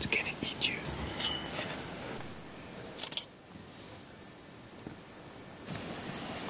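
Hushed whispering voices, with a brief sharp click about three seconds in.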